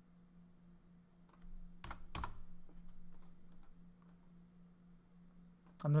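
Scattered clicks at a computer, starting about a second in, with the two loudest close together around two seconds, over a steady low hum.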